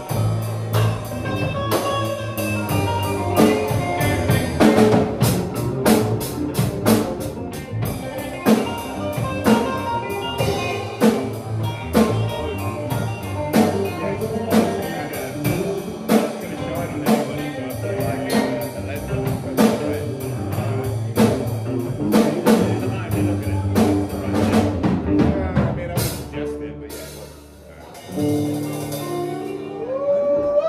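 Live band playing an instrumental groove on drum kit, electric bass, electric guitar and keyboard, with a steady drum beat. The tune winds down and ends a few seconds before the end.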